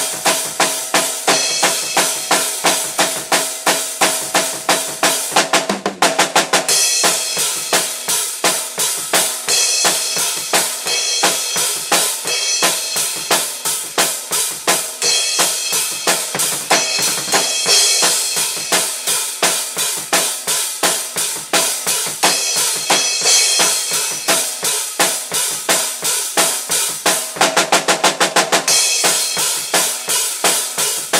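Acoustic drum kit played in a fast, driving beat of kick, snare and cymbals, with quick rolls about six seconds in and again just before the end.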